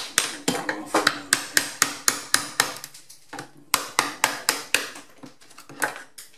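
Hammer striking a bolster chisel driven behind ceramic wall tiles to knock them off the wall: sharp metal-on-metal blows about four a second, a pause about three seconds in, then a further run of strikes.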